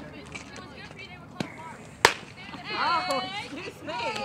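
A single sharp crack of a softball pitch meeting bat or glove at home plate about halfway through. High-pitched shouts from players or spectators follow.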